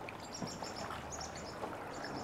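Quiet outdoor ambience on open water with a run of short, high-pitched bird chirps in the first half, and the soft dip of a canoe paddle in the water.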